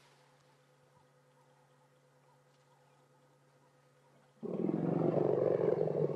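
A sudden, very loud African elephant call starts about four and a half seconds in, low and rough. It follows faint, steady background. The guide takes it for a female elephant answering another elephant coming through the thicket.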